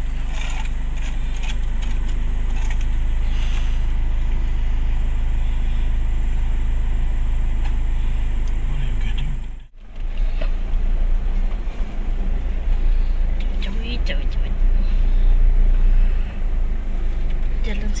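Inside a vehicle's cab, steady engine and tyre rumble as it drives a rough, rutted dirt track, with occasional knocks and rattles from the bumps. The sound cuts out for a split second about halfway through, then the rumble comes back heavier and more uneven.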